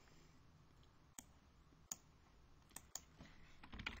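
Near silence broken by a few isolated sharp clicks, then computer keyboard typing starts near the end.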